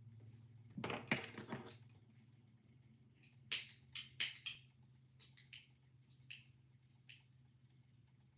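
Yarn and a small metal crochet tool handled close to the microphone. There is a rough scraping burst about a second in, then a quick run of short, sharp clicks or snips a few seconds in, with a few fainter single clicks after, over a low steady hum.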